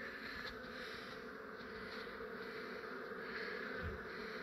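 A large cluster of honey bees buzzing in a steady hum as the colony begins walking into a hive box. There is a soft low bump near the end.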